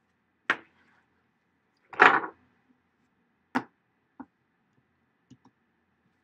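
Half a dozen short, sharp taps and clicks at irregular intervals, close to the microphone, with near silence between them. The loudest and longest comes about two seconds in.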